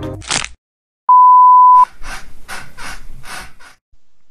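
Music cuts off with a short whoosh, then a loud, steady bleep tone sounds for under a second. It is followed by quick, rhythmic breathy panting, about four breaths a second, that stops shortly before the end.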